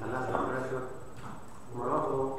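Only speech: a man talking, with a short pause in the middle.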